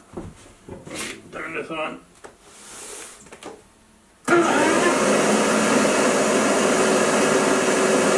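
Faint handling of the wooden jig, then about halfway through the bandsaw is switched on and runs at a steady speed with a loud, even motor hum and whir. No wood is being cut yet.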